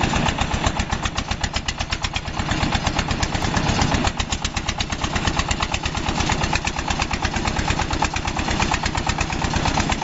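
Small self-propelled walk-behind corn harvester's engine running steadily with a fast, even firing beat while the machine picks corn.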